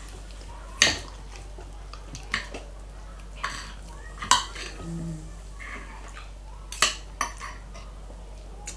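Metal spoon and fork clinking and scraping on a ceramic dinner plate during a meal: a string of separate sharp clinks, the loudest about a second in and just after four seconds in.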